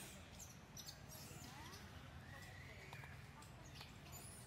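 Faint outdoor ambience: a low steady rumble with a few faint, high chirping calls and scattered light clicks.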